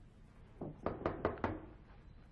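A quick series of knocks on an office door, about five raps in under a second, near the middle.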